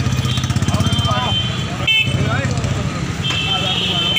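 A motor vehicle engine running steadily with a low, even pulse, under the chatter of men's voices. A thin steady high tone comes in about three seconds in.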